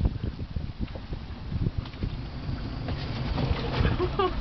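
Wind rumbling on the microphone, with scattered knocks and rattles from a wire crab pot being handled on a boat deck.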